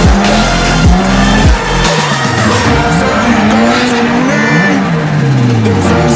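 Mazda RX-7's rotary engine revving up and down over and over as the car drifts, laid over electronic music whose heavy bass beat drops out about two seconds in.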